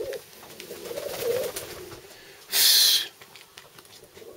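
Domestic pigeons cooing in the loft, a low coo at the start and another about a second in. About two and a half seconds in comes a brief, loud rustle lasting half a second, from handling close to the microphone.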